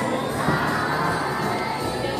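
A large group of schoolchildren shouting together over music.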